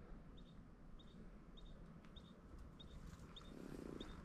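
Faint bird chirping: a short, high double note repeated evenly about twice a second over a near-silent background.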